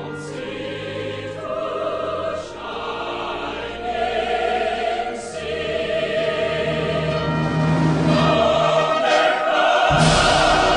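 Background music: a choir singing long sustained chords, swelling steadily louder.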